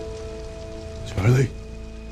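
Tense drama underscore of sustained held notes over a faint hiss, broken by one short loud burst of sound a little over a second in.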